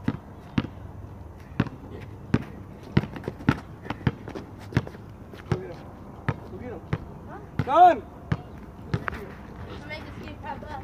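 A basketball bouncing on asphalt, a string of separate bounces coming about one to two a second at an uneven pace. A short shout near the end is the loudest sound.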